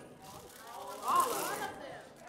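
Audience members calling out answers from the room, faint and distant. One voice stands out about a second in, shouting "All of them!"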